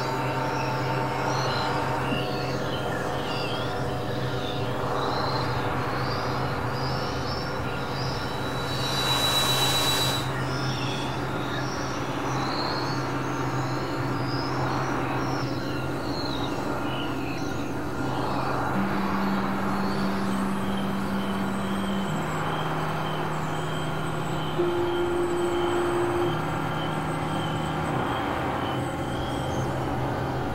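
Experimental electronic drone music: several layered tracks form a dense, steady bed of sustained low and high tones. A brief hiss swells about nine seconds in, and in the last third a few held notes step between pitches.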